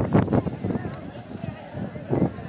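Voices of people in a crowd talking, loudest in the first half second, then fainter murmuring.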